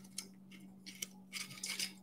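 Faint tabletop handling noises: a few sharp small clicks, then a brief cluster of soft scuffing sounds near the end, over a low steady hum.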